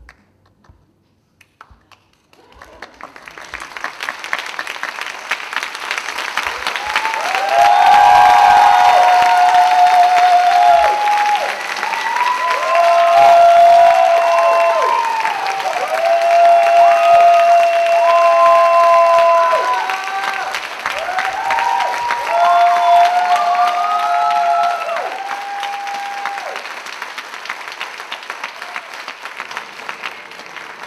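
Theatre audience applauding, the clapping starting a couple of seconds in and building. Held calls from the crowd ring out over it through the middle, and the applause thins out near the end.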